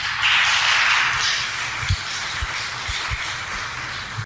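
Audience applauding: a dense clatter of many hands clapping, loudest in the first second and then easing slightly, with a few soft low thumps.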